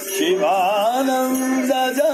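Devotional bhajan: a voice sings an ornamented melody with sliding, wavering pitch over a steady held note underneath.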